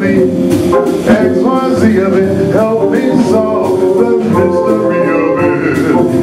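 Live jazz-blues band playing: electric guitar, organ and drums, with a male voice singing over them.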